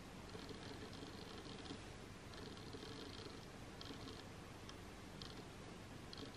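Faint, intermittent rustling of long hair being gathered and sectioned by hand, over quiet room tone.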